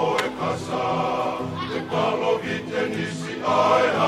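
A group of men singing a Tongan kava-club (kalapu) song together.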